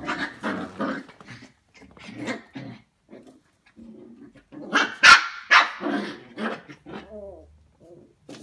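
Small puppies barking and growling as they play-fight: a run of short, irregular barks and growls, the loudest burst about five seconds in.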